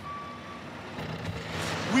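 Truck reversing alarm beeping: one steady half-second beep at the start, repeating about once a second, with a low steady hum coming in about a second in.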